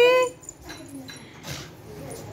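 Infant's drawn-out, rising squeal or coo that stops shortly after the start, followed by quiet with faint movement on the bed.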